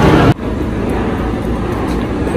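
Steady street traffic noise outdoors, an even wash with no distinct events. A louder stretch of sound cuts off abruptly about a third of a second in.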